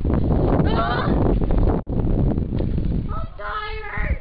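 Wind rumbling heavily on the camera microphone, cut off abruptly about two seconds in. Then a young person's high-pitched, wavering vocal sounds, with no words, come in near the end.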